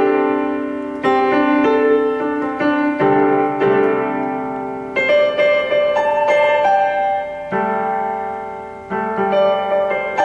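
Electronic keyboard on a piano voice playing a series of sustained chords, C major six-nine voicings, each struck and left to ring and fade, a new chord about every one to two seconds.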